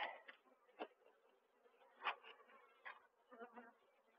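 Faint buzzing of a honeybee colony on an opened hive box, with a few soft clicks.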